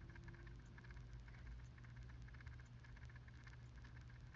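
Faint, rapid clicking rattle, a dense run of small ticks, from something in the room that she calls rattling (カラカラ) and suspects is a clock, over a low steady hum.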